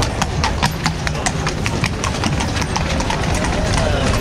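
A carriage horse's hooves clip-clopping on cobblestones at a walk, about four to six sharp strikes a second over a low rumble, thinning out near the end.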